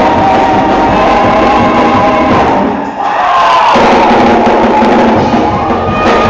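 Loud gospel praise-break music: choir and church band with drums, with the congregation joining in. Just before halfway the low end drops out for about a second, then the full band comes back in.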